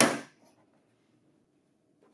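Plastic standard output bin being pulled off the top of a Lexmark laser printer: a short plastic clatter and scrape right at the start that dies away within half a second.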